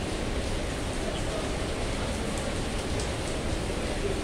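Heavy rain falling, a steady, even hiss.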